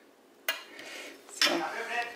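Metal spoon clinking and scraping against a glass baking dish and a ceramic plate while food is scooped out: a sharp clink about half a second in, scraping after it, and a louder clink near the end.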